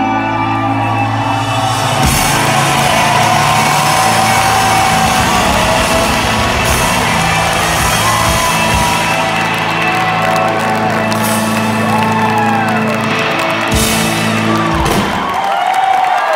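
A live rock band with electric guitars, bass and drum kit holds a loud, sustained closing chord, with several crashing drum and cymbal hits, while the crowd whoops and cheers. The held notes stop about a second before the end.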